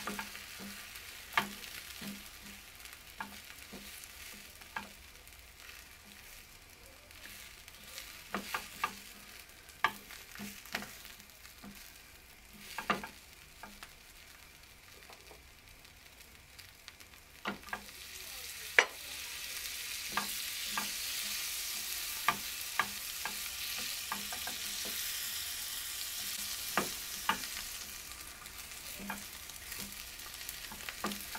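Egg and vegetable mixture frying in butter in a rectangular nonstick pan, with short clicks and taps of a spatula against the pan throughout. The sizzle grows louder a little past halfway.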